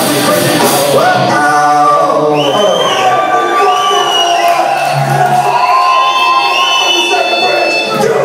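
Live rock band playing loudly, heard through the room. About a second in the drums drop out, leaving long, slowly wavering held vocal notes over sustained instruments.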